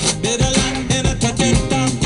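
Music with guitar coming from the loudspeaker of a Neckermann Royal 111/21 valve radio, a station picked up as the dial is tuned.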